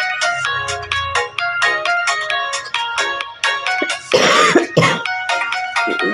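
Background music of quick, bright pitched notes in a steady rhythm, broken about four seconds in by a short harsh noisy burst.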